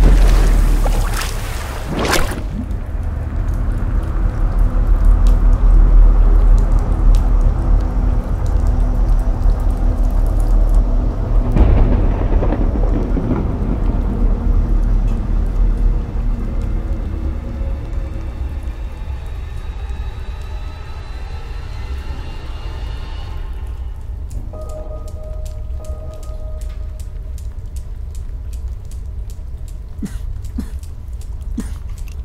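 Cinematic score and sound design: a heavy, sustained deep bass rumble with thunder-like noise swells at the start and again about twelve seconds in, and faint held tones over it. It thins out over the last few seconds to a lighter hum with fine, rapid ticking.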